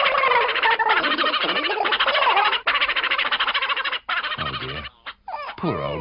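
Cartoon sound effect of small creatures chattering and squawking in a rapid, high-pitched, warbling gabble, like sped-up gobbling, for about four seconds. Near the end it gives way to a lower-pitched cartoon voice.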